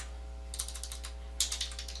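Computer keyboard keystrokes as a shell command is typed: a few separate key clicks, the loudest about one and a half seconds in, over a steady low electrical hum.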